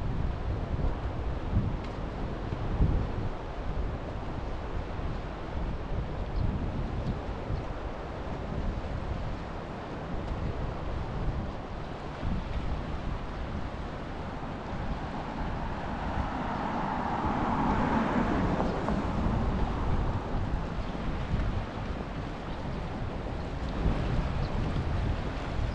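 Wind buffeting the microphone over the steady wash of sea waves on a rocky shore, with a louder rushing swell that builds and fades about two-thirds of the way through.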